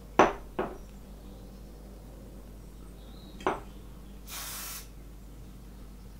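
A single short burst of aerosol hairspray, about half a second of hiss, a little past four seconds in. Before it come three sharp clicks, two close together at the start and one about three and a half seconds in.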